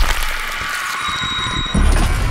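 Sci-fi trailer sound design: a steady airy hiss with a faint high whine about a second in, then a sudden heavy low boom shortly before the end.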